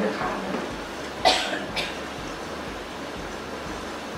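Two short coughs about a second in, half a second apart, the first the louder, over a steady room hum.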